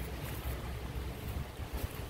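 Wind buffeting a phone's microphone outdoors: an uneven low rumble over a faint steady hiss.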